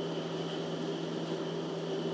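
Steady background hum of the room, with a constant low tone and a faint even hiss.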